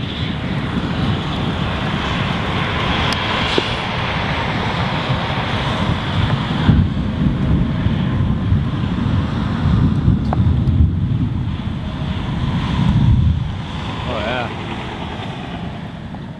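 Strong storm wind buffeting the microphone, a dense gusting rumble that eases off near the end. A brief voice sound comes a couple of seconds before the end.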